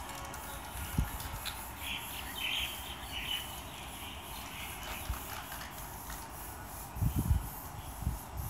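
Aerosol spray-paint can hissing in short bursts over steady outdoor ambience, with a low thump about a second in and a louder cluster of thumps near the end.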